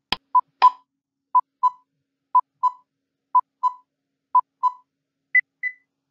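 Quiz countdown-timer sound effect: a click, then a pair of short electronic beeps every second, five times, then a higher-pitched pair near the end as the countdown runs out.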